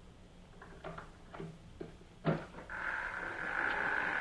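Radio-drama sound effect of a locked door being opened. A few faint clicks of a key working the lock are followed by a louder clunk as it gives, then a long, steady creak of the door swinging open.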